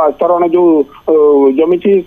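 Only speech: a reporter's voice over a telephone line, thin and narrow.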